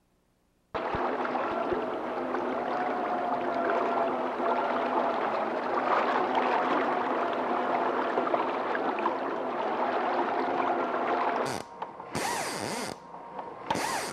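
A fishing reel's ratchet clicker buzzing continuously as line is pulled off the spool, with a faint wavering whine in it. It starts suddenly about a second in, breaks off near the end, and gives way to a few short separate bursts of sound.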